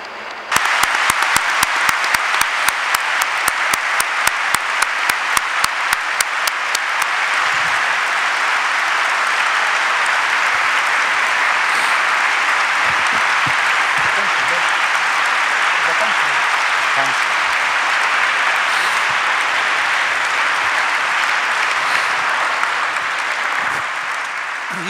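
A hall audience applauding steadily. For the first seven seconds or so, quick, even claps close to the microphone stand out, about four or five a second.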